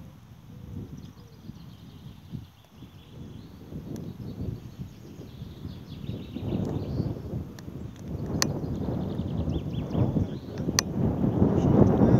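Wind rumbling on the microphone, growing louder in the second half, with two sharp knocks about eight and eleven seconds in.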